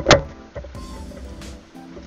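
A rock knocks against the steel sluice box and its metal screen about a tenth of a second in, a single sharp clack with a short ring. Under it runs a steady hum of held low tones.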